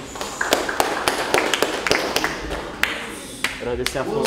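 Hands slapping together in quick, irregular high-fives and claps as a line of people exchange hand slaps, with voices in the background.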